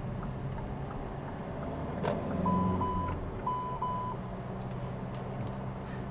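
Kia Stonic's lane departure warning chiming: two pairs of short, high beeps about a second apart, the sign that the car has briefly drifted over the lane line. Steady engine and road noise run underneath in the car's cabin.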